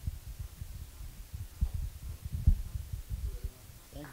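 Handling noise from a handheld microphone: irregular low thumps and rumbling as the mic is moved about in the hand.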